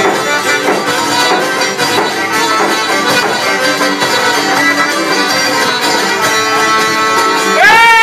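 Albanian folk ensemble playing an instrumental passage on violin, accordion and plucked long-necked lutes. Near the end a man's voice comes in on a long held, wavering note.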